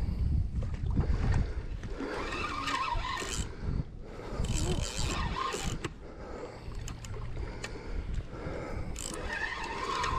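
A spinning reel being cranked as a big blue catfish is reeled in to the bank, with water splashing in several noisy spells as the fish nears the surface. Wind rumbles on the microphone, most heavily in the first second or so.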